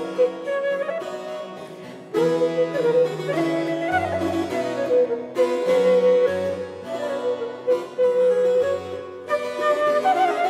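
Flute with keyboard accompaniment playing a lively Allegro movement of a classical-era flute sonata, quieter for a moment about a second in.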